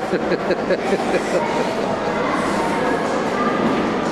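People laughing with a quick run of 'ha-ha' pulses in the first second, over a steady rough background noise that runs on after the laughter fades.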